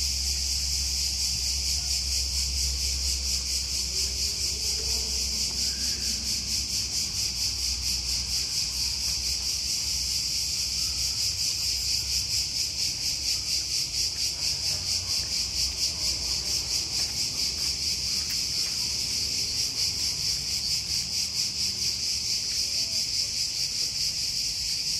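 A chorus of cicadas gives a continuous, high-pitched buzz with a fast, fine pulse.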